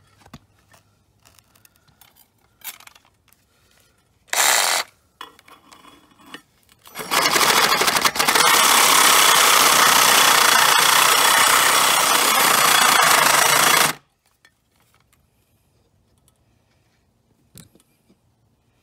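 Reciprocating saw cutting an old steel pipe to length: a brief blip of the motor, then a few seconds later a steady cut lasting about seven seconds that stops abruptly.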